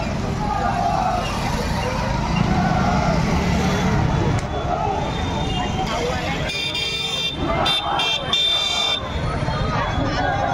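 A crowd of marchers talking over one another, with a low engine rumble beneath. About six and a half seconds in, a horn sounds in several short, broken blasts lasting a couple of seconds.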